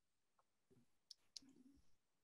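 Near silence: room tone, with two faint clicks about a second in, a quarter second apart.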